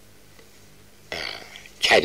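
A pause in a man's speech with only a faint steady hum, then a short breathy vocal sound from him about a second in, and his speech resumes near the end.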